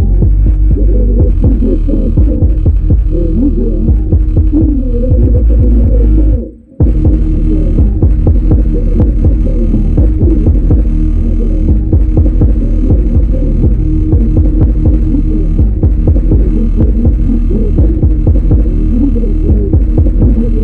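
Subwoofer in a plywood enclosure playing bass-heavy music loud, deep bass throbbing without a break except for a brief cut-out about six and a half seconds in.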